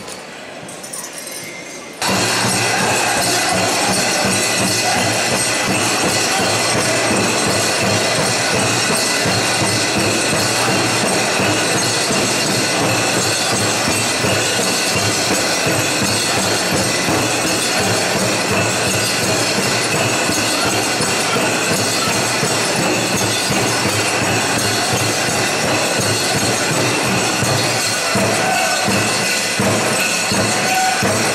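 Powwow music: a drum group drumming and singing, with the metal jingle cones on the dancers' regalia clinking. It starts abruptly about two seconds in and carries on loud and steady.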